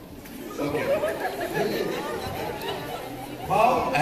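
Chatter of a group of people talking at once, starting about half a second in, with one voice coming in louder near the end.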